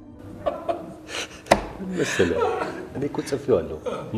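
Two men talking and laughing, with one sharp slap or click about a second and a half in.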